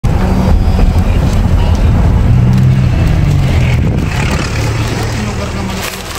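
Car engine and road noise heard from inside a moving car: a low, steady rumble that eases off near the end.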